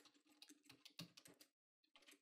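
Faint typing on a computer keyboard: a quick run of keystrokes with a short pause near the end.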